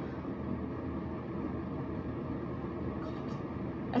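Single-serve K-cup coffee maker running before it starts to pour: a steady, even whirring hum that sounds like a heater.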